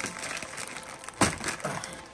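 Plastic candy wrapper crinkling as hands handle and break apart sweets, with one sharper crack a little over a second in.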